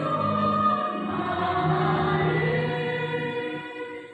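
A church choir singing a hymn in long held notes, tapering off near the end.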